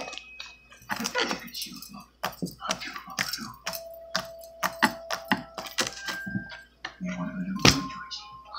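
Pink homemade slime being squished and kneaded by hand on a tabletop: a quick, irregular run of small sticky clicks and pops.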